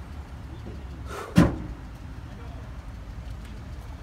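Steady low outdoor rumble with one short, loud exclamation from a man about a second and a half in.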